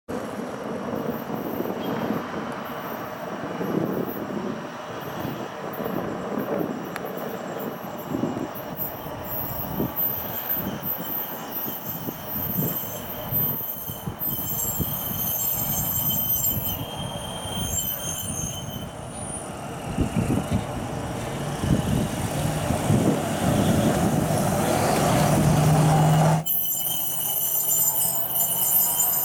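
Hi-rail truck running on the rails: a steel-on-rail rumble with scattered knocks and thin high-pitched squeal tones that come and go. It grows louder and closer toward the end, then cuts off abruptly.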